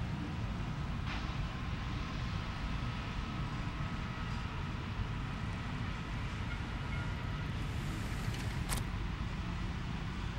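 Steady low rumble of outdoor city noise heard from high up, with two brief sharp clicks: a faint one about a second in and a louder one near the end.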